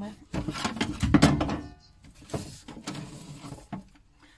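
Bumps, scrapes and rustling of a book being reached for and lifted out close to the microphone. The loudest knocks come about a second in, followed by a second, quieter stretch of rustling.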